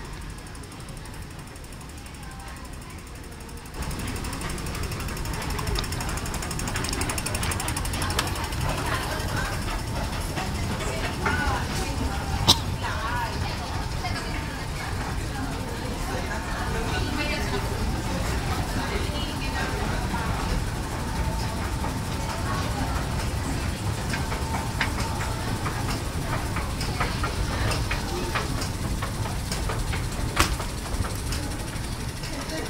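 A metro station escalator running: a steady low rumble and rattle of the moving steps that rises sharply about four seconds in, with a faint steady hum through the second half. Voices of passersby come and go over it.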